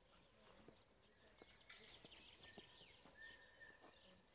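Near silence: quiet outdoor background with faint bird chirps and a few soft clicks.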